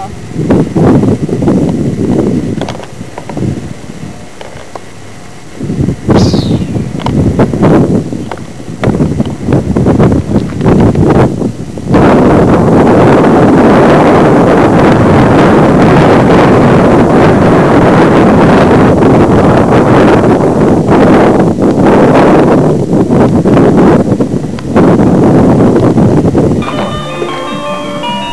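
Wind buffeting a camcorder microphone, gusting in bursts at first, with a short high falling whistle about six seconds in, then blowing hard and steadily. Near the end it cuts off and a snatch of music comes in.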